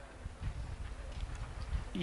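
A pause in speech: classroom room noise with a low rumble and faint, irregular low knocks.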